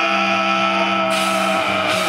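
Live heavy-metal band holding one sustained, amplified chord: several steady notes ringing out unchanged. A high hiss joins about halfway through.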